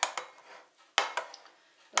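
Metal spoon stirring yogurt and blended blackberries in a glass bowl, clinking sharply against the glass a few times: once near the start, twice about a second in, and again just before the end.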